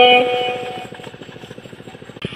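The tail of a held sung note in a Red Dao hát lượn song fades out within the first half second. It leaves a faint, fast, even pulsing in the background, like a small engine running.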